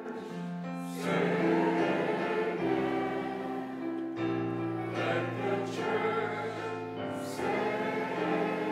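Church music: a group of voices singing together over sustained keyboard chords, the voices coming in about a second in.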